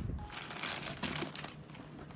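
Rustling and light clicking of makeup products being rummaged through by hand in an aluminium train case, busiest in the first second and a half, then dying down.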